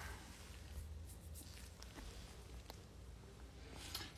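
Quiet room with a steady low hum and a few faint clicks of a computer mouse.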